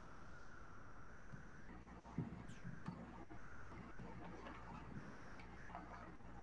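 Faint room tone over a video-call line: a steady low hum with a few faint, scattered clicks.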